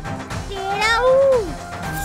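A single drawn-out vocal cry, rising and then falling in pitch for about a second, over steady background music.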